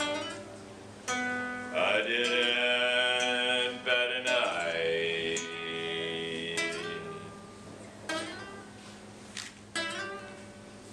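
Live solo acoustic guitar being picked, with a man singing long held notes over it.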